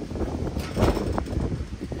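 Wind rumbling on the microphone, with a few short knocks and a brief clink about a second in as a locked metal gate is tried and does not give.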